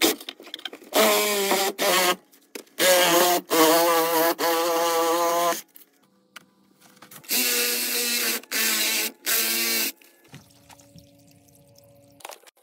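A power tool at work on pipe, run in three loud bursts of one to three seconds, each a whine whose pitch wavers. A faint steady hum follows near the end.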